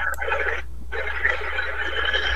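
Applause from video-call participants, heard through the call's compressed audio as a thin, garbled hiss, with a brief break about half a second in.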